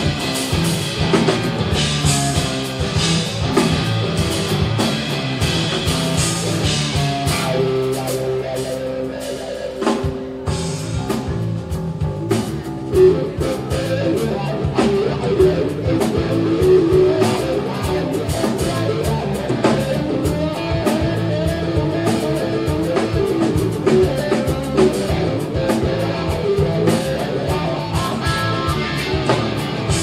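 Live rock band playing: electric guitar, electric bass and drum kit, with a brief drop in loudness about ten seconds in before it builds again.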